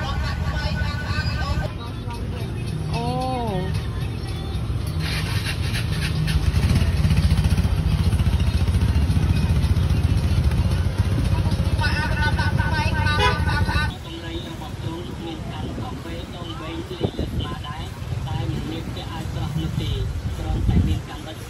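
Market crowd ambience: people talking over a motor vehicle engine running, with the engine rumble loudest in the middle. The sound changes abruptly about two-thirds of the way through.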